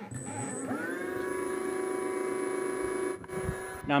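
Brushless outrunner motor driven by an ESC spinning up: a whine that rises in pitch about 0.7 s in, then holds steady and drops away about three seconds in.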